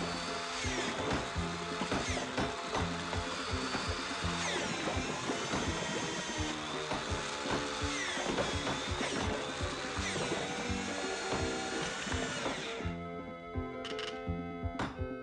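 Electric drill running continuously, stopping sharply about a second before the end, over rhythmic cartoon background music.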